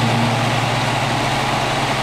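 Helicopter in flight heard from inside the cabin: a steady, even rush of engine and rotor noise with a constant low hum.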